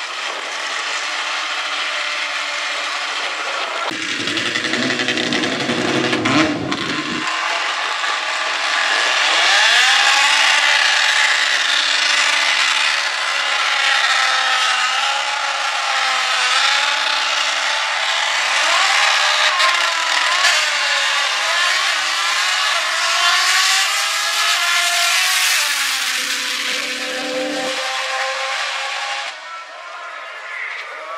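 Two drag-racing cars, a rotary-engined Toyota Starlet and a piston-engined rival, revving hard at the starting line with the pitch rising and falling. Near the end they launch and run at high revs. A deeper rumble sounds a few seconds in.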